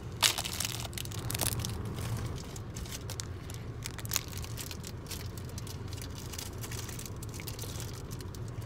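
A person chewing a cream cheese coffee cake close to the microphone: a steady run of small crackly, crinkly mouth and crumb noises.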